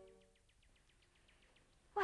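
The last of a sustained film-score chord dies away in the first half second. Under it comes a faint, rapid trill of short chirps, about ten a second, from a small animal in a night-time ambience, which thins out after about a second.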